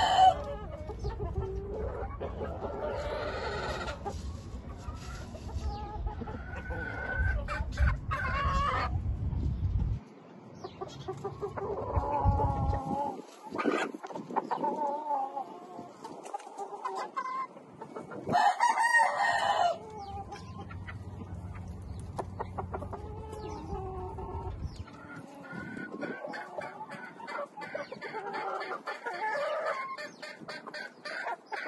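Game roosters crowing several times; the loudest crow comes about two-thirds of the way through. A low rumble runs under the first ten seconds.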